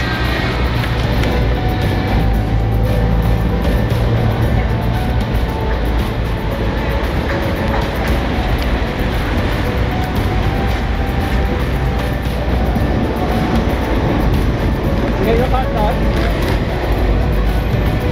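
Steady, loud outdoor noise of road traffic, with wind rumbling on the camera microphone.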